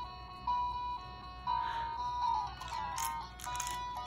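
Fish A Tune baby musical toy playing one of its built-in electronic melodies: a simple beeping tune of single steady notes, changing pitch about every half second.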